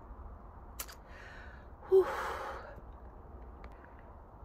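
A woman sighing: a breathy "whew" blown out about two seconds in, fading over about half a second.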